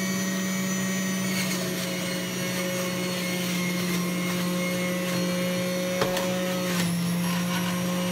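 Electric centrifugal juicer running steadily with a low motor hum while balls of kale are fed through it. A few short knocks come through, and the motor's pitch drops slightly near the end as it takes load.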